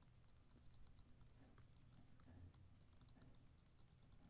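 Near silence, with faint irregular ticks of a stylus tapping and writing on a tablet screen.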